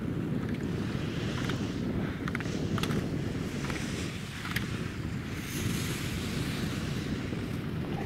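Wind buffeting the camera microphone: a steady low rumble with a few faint ticks scattered through it.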